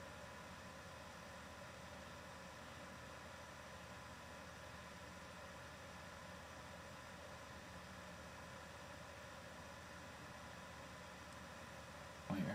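Near silence: a steady faint hiss of room tone and microphone noise.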